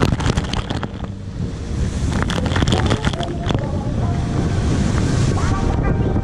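Wind buffeting the action camera's microphone while a wakeboard skims across the lake, with water spray splashing over the camera in sharp crackling bursts in the first second and again a couple of seconds in.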